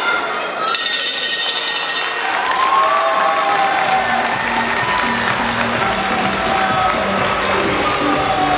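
Ring bell ringing rapidly for about a second, starting just under a second in, marking the end of the final round. Crowd noise and voices follow, with background music with a steady beat coming in about four seconds in.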